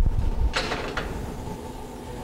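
A dull thump as a large aluminium stock pot is set down on a counter, then a brief metallic clatter, over a steady low kitchen hum.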